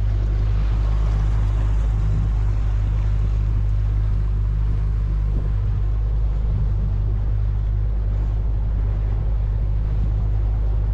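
Mercury outboard motor running steadily at cruising speed, pushing a fishing boat across a lake, with a steady low hum and water rushing along the hull.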